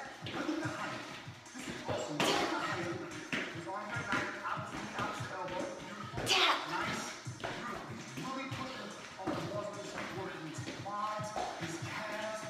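Background music with a voice over it, mixed with the thuds and shuffles of feet landing on a hard floor during high-knee jumping; the sharpest landings come about two seconds in and about six seconds in.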